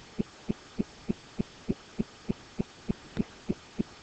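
A low throb pulsing evenly about three times a second.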